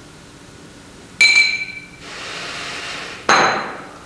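Two sharp clinking knocks about two seconds apart, as a hard object is struck. The first rings briefly with a high tone, and a steady hiss of about a second follows each knock.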